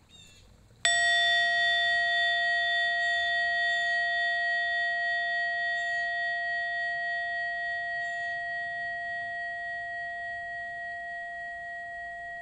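A bell struck once about a second in. A clear low tone and several higher overtones ring on, fading slowly with a slight wobble, and are still sounding at the end.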